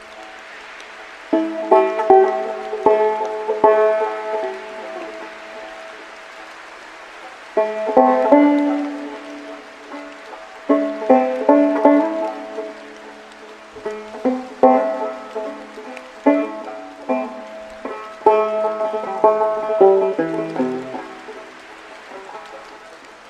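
Solo banjo played slowly, with short phrases of plucked notes separated by pauses in which the notes ring out and fade.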